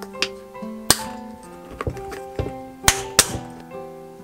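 Snap-lock lid of a Glasslock glass food container being clipped shut, its plastic locking flaps snapping down in four sharp clicks, the loudest pair close together near the end. Acoustic guitar background music plays under it.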